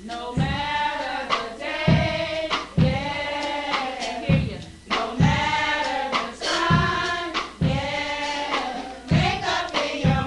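Youth gospel choir singing together in long, held phrases, with a low beat pulsing underneath.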